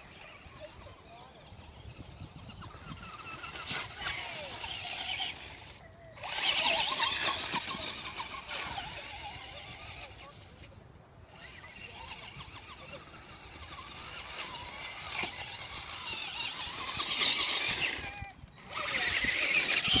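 Motor of a Traxxas radio-controlled truck whining as it is driven through mud. The pitch rises and falls with the throttle in several swells, cutting out briefly three times.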